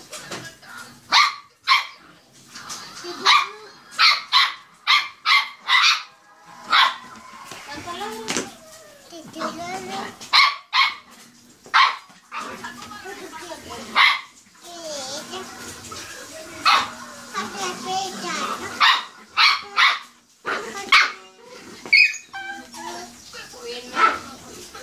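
Small dog barking repeatedly, short sharp barks in quick runs of two to four, with a young child's voice between them.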